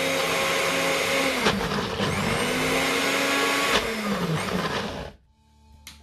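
NutriBullet blender motor running on a thick avocado purée. Its pitch sags briefly about a second and a half in and recovers, then sinks as the motor winds down and stops about five seconds in.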